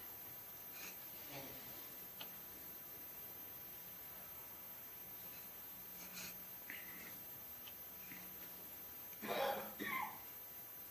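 Quiet room tone through a lecture microphone: a faint steady hum with a few soft scattered clicks, and a short breathy vocal sound near the end.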